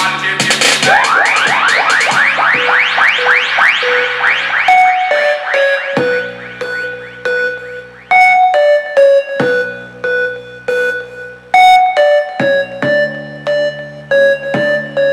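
Electronic music played back through a home-built PVC-tube Bluetooth speaker with 3-inch midrange drivers, tweeters and passive radiators. It opens with a quick run of rising sweeps, then moves to keyboard notes over a held bass line.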